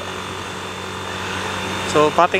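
Bajaj Pulsar single-cylinder motorcycle engine running steadily at highway cruising speed, with wind and road noise over it. The sound grows a little louder toward the end as the bike speeds up slightly.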